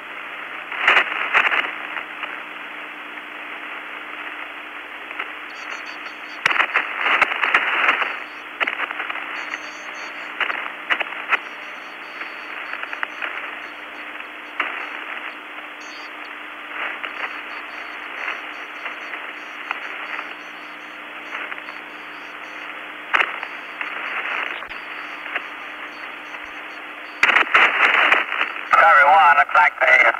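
Open radio channel between transmissions: a steady, narrow-band hiss with a low hum underneath, broken by occasional crackles and clicks.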